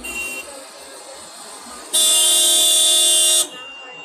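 Car horn in street traffic: a short toot at the start, then one long, steady, loud blast about two seconds in, lasting about a second and a half.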